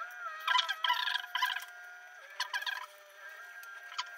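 Volvo crawler excavator working, with a steady hydraulic whine that dips in pitch now and then. Several short rattling bursts come in the first three seconds.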